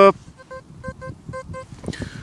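Teknetics Gold Maxx Power metal detector giving about six short, same-pitched beeps in just over a second, its target signal on a Roman coin.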